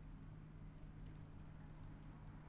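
Faint computer keyboard typing: a quick run of keystrokes starting a little under a second in.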